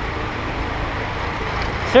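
Steady hiss of heavy tropical rain pouring down, with a low rumble underneath.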